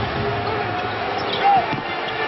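Arena crowd noise during a basketball game, with a basketball bouncing on the hardwood floor and a short sneaker squeak about one and a half seconds in, the loudest moment.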